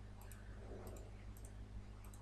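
A few faint computer mouse clicks, spread about half a second apart, over a low steady electrical hum.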